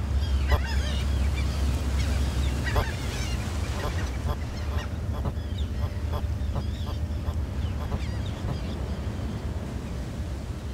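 Seabird colony: many short, overlapping bird calls, with a steady low rumble of surf underneath.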